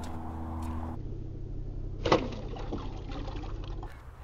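Water splashing and sloshing, with one sharper splash about two seconds in.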